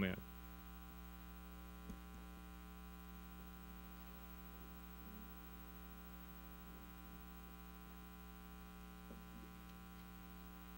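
Steady electrical mains hum with a stack of even overtones, running at a low level through a pause in the service audio, with a faint tick about two seconds in.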